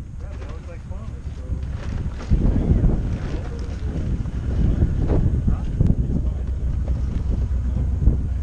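Wind buffeting the camera microphone, a low rumble that gets heavier about two seconds in.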